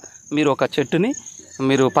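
A man speaking, over a steady high-pitched chirring of insects in the background.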